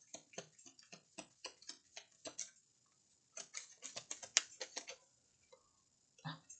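A deck of oracle cards being shuffled and handled: quick, irregular runs of light clicks as the cards slap and flick against each other. A short lull about halfway through is followed by a denser run of clicks.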